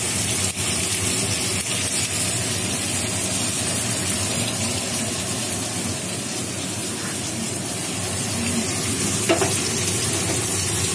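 Cut vegetables frying in oil in a wok, a steady sizzling hiss.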